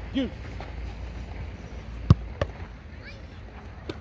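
Football impacts on a training pitch: a sharp smack about two seconds in, a duller thud a moment later, and another smaller knock near the end.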